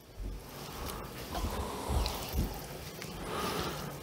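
A hand stirring and pushing down vermiculite soaking in water in a plastic bucket: soft swishing and sloshing, with a couple of low bumps about halfway through.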